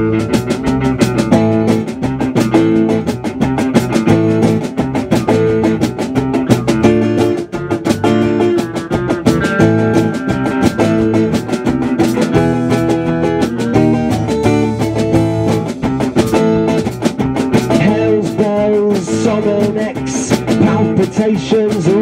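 Acoustic guitar strummed in a steady rhythm, an instrumental passage of a song played live.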